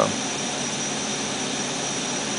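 Steady whir of electronics cooling fans, with a faint thin high tone and a low hum.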